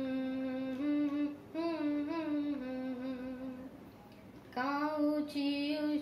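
A voice humming a tune in long held notes. It breathes briefly about a second and a half in, pauses for most of a second near four seconds, then picks the tune up again.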